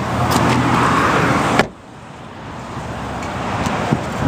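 Rustling, hissing handling noise from the camera being moved, cut off suddenly by a sharp click about a second and a half in, followed by fainter noise that slowly grows louder.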